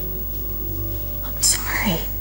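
A woman sobbing: a sharp breathy gasp about one and a half seconds in, then a cry that falls steeply in pitch. Under it runs soft sustained music of ringing tones.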